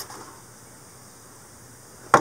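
Faint, steady background hiss with no distinct events: quiet outdoor room tone.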